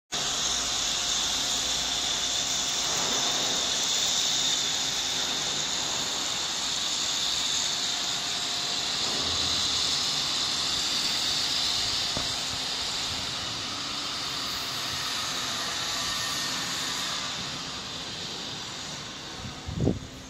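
Nut roasting machine running, a steady airy hiss from its fans and burners with a faint motor hum underneath, easing off slightly near the end. A brief thump just before the end.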